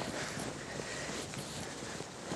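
Light wind on the microphone, a steady hiss, with faint irregular footsteps in soft sand.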